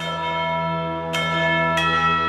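Bells struck one after another, three strikes within two seconds. Each tone rings on and overlaps the next, as in a title theme.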